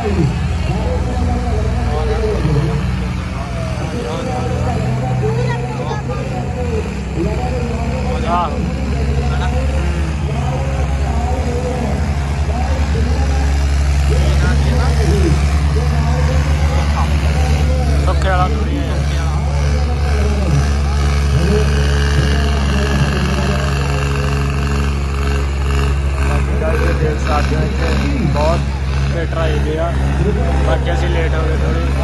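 Tractor diesel engines running steadily, a low rumble that grows a little louder about halfway through, under many people's voices.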